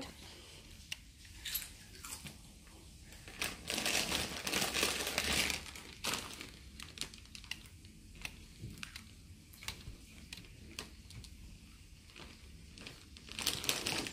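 Soft rustling and crinkling, loudest for about two seconds around four seconds in, with scattered light clicks as the keypad buttons of a desk telephone are pressed.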